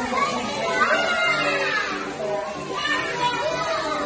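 Young children's high voices chattering and calling out, with faint music underneath.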